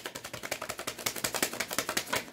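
Tarot cards being shuffled by hand: a fast, even run of crisp card clicks lasting about two seconds.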